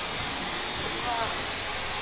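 Large steel pot of Red Dao herbal bath water at a hard rolling boil, giving off steam with a steady rushing hiss.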